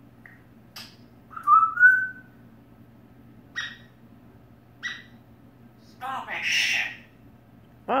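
African grey parrot whistling and calling: a rising whistle about a second and a half in, the loudest sound, then two short chirps and a longer, harsher, noisier call about six seconds in.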